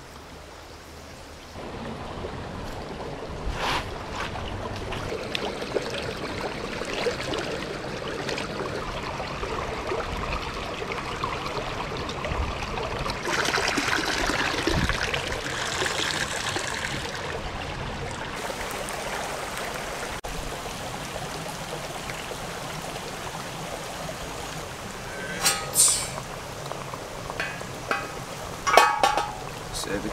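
A shallow stream running over rocks. Water splashes in a steel bowl as cut vegetable pieces are rinsed in it, loudest for a few seconds in the middle. A few sharp clicks come near the end.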